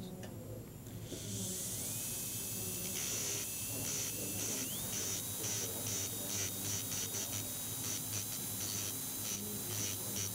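Dental drill (handpiece) starting about a second in with a hiss and a thin whine that rises in pitch, steps higher about five seconds in and holds, with repeated short bursts. It is grinding down a premature contact on a tooth's cusp slope to adjust the patient's bite.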